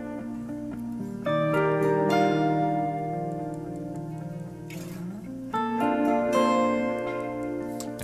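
Fender Jazzmaster electric guitar, plugged straight in, playing sustained chords layered over a looped guitar part. New chords are struck about a second in and again about five and a half seconds in, with a brief scratchy strum just before the second.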